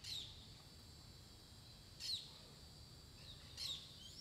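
A bird calling three times, each call a short high chirp sliding downward in pitch, over faint steady background noise.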